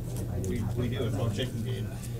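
Indistinct background chatter of people talking in the room, over a steady low hum.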